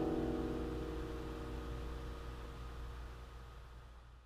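A final chord on an acoustic guitar ringing out and slowly fading away, over a steady low hum.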